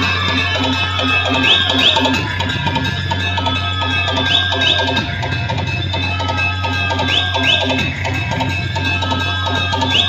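Loud DJ dance music with a drum beat and a heavy steady bass, played through truck-mounted loudspeaker stacks. A pair of quick high electronic swoops repeats about every three seconds.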